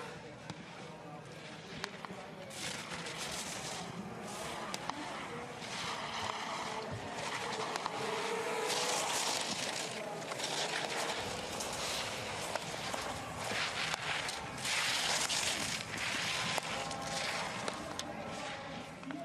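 Ski edges scraping and hissing on hard snow as a giant slalom racer carves through turns, in several surges of a second or two, with a faint voice in the background.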